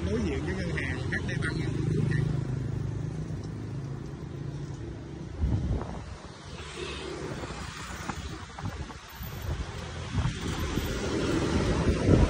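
City street traffic: motorbike engines passing close by over a steady background of traffic noise.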